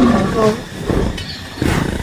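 A large dinosaur's growl from a film soundtrack, dying down to a low rumble about halfway through and picking up again near the end.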